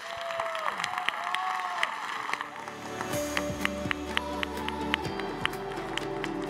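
Audience applause with a few cheers at the end of a talk, with outro music coming in; from about halfway the music, with held tones and a steady beat, takes over.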